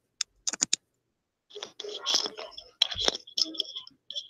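Phone-line handling noise as a caller plugs headphones into his phone: a quick run of sharp clicks, then a couple of seconds of muffled rustling and scraping with faint whispery sounds.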